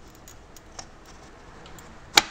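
A few faint, small clicks and taps from a plate holder being fitted into the back of a large-format view camera.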